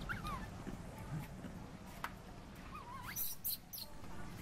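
Baby macaque giving short, high whimpering squeals: one falling cry at the start and a wavering, rising one about three quarters through. A sharp click comes about halfway, and a few brief scratchy noises come near the end.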